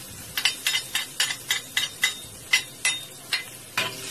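Metal utensil tapping sharply against a wok, about three clicks a second with a metallic ring, as minced garlic is knocked off into the pan. Near the end, frying sizzle rises as the garlic hits the hot melted butter.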